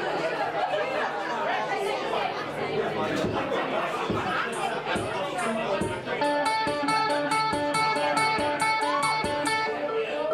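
Audience chatter and murmur, then about six seconds in an electric guitar comes in with a steady ringing chord pattern, a quick even ticking beat of about six a second running above it, as the song begins.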